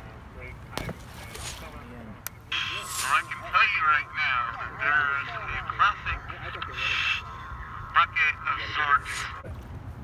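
A helmeted diver's voice coming through the speaker of a surface dive-communications box, tinny, narrow and garbled, from about two and a half seconds in until near the end. A steady low hum runs underneath.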